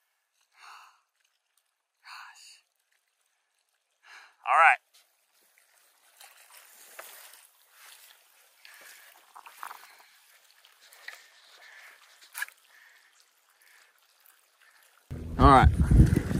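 A man's short breaths and a brief voiced sigh about four and a half seconds in, over near silence with faint scattered rustling. In the last second wind buffets the microphone.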